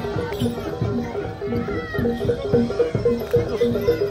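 Traditional Javanese percussion music of the kind that accompanies a barongan and reog procession: regular drum strokes under short, repeating metallic notes in a steady beat.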